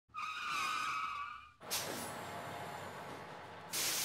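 Vehicle sound effects: a wavering tire screech for about a second and a half, then a sudden burst of noise that fades slowly, and a short loud hiss near the end.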